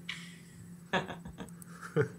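Soft, breathy laughter from a woman, with a single short spoken word about a second in, over a faint steady hum.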